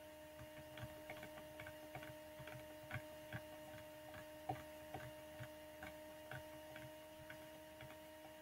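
Light, irregular clicks, two to three a second, from a computer mouse's scroll wheel as a page is scrolled, over a steady electrical hum.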